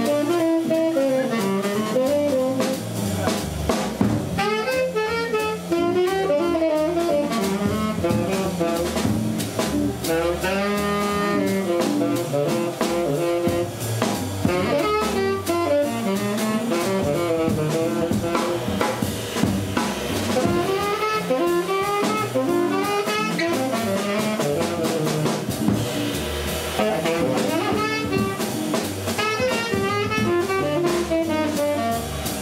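Live jazz combo: a saxophone solos in long, bending phrases over a drum kit keeping time on the cymbals, with bass and electric guitar in the band.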